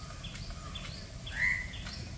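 A bird calling: a few faint short chirps and one clearer call about one and a half seconds in, over a quiet, steady outdoor background.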